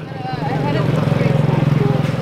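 A small motorbike engine running steadily close by, a low drone with a fast even pulse, with faint voices over it.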